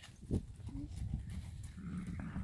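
Hoofbeats of an Arab/Standardbred mare trotting loose on the soft dirt of a round pen: a few thuds, the loudest about a third of a second in.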